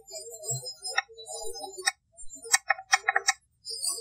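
A series of sharp clicks in a woodland field recording: single clicks about one and two seconds in, then a quick run of about six clicks in the second half. The analyst takes them for sasquatch signals.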